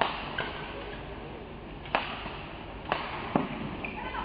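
Arena crowd murmur, with four sharp knocks: one at the start, one about two seconds in, and two close together around three seconds.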